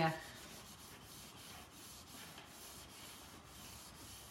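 Faint, repeated rubbing strokes of an FMM plastic cake smoother buffing the sugarpaste covering on a cake.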